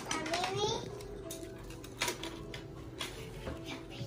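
Foil-lined burger wrapper crinkling and rustling as hands handle a burger and lift off its top bun, in irregular crackles with a sharper one about two seconds in.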